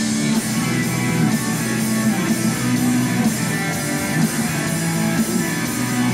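A hard rock band playing live, with electric guitar to the fore over the band, at a steady loud level throughout.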